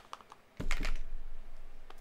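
A quick run of light clicks and taps, close together like typing, growing louder and denser with some handling rumble from about half a second in.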